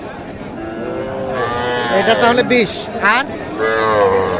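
Young calves mooing: one long drawn-out call from about a second in, and another starting near the end.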